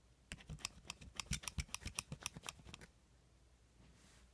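A coin scratching the latex coating off a lottery scratch ticket clipped to a clipboard: a rapid run of short scrapes that stops a little before three seconds in.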